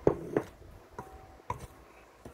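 Slotted wooden spatula stirring flour in a glass mixing bowl, knocking against the glass about five times with a short ring; the two knocks near the start are the loudest.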